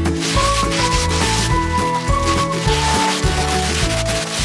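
Background music, a melody stepping down over steady bass notes, laid over the crinkling and rustling of plastic wrapping being torn off by hand.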